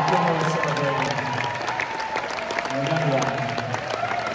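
Live audience applauding with scattered shouts, while the opening chords of a song are played under it.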